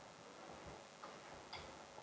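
Near silence: room tone with three faint ticks, spaced about half a second apart.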